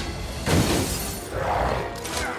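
Film action sound effects over a music score: a sudden heavy crash of impact and breaking about half a second in, then a second loud burst of crashing noise about a second and a half in.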